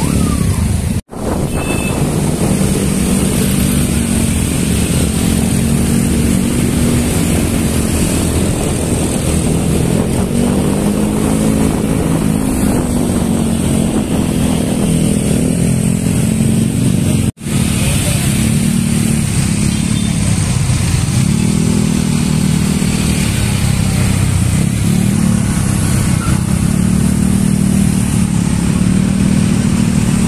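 Many small motor scooter engines running together in a slow-moving convoy, a dense steady drone whose pitch rises and falls as riders throttle up and ease off. The sound cuts out abruptly for an instant twice, about a second in and just past halfway.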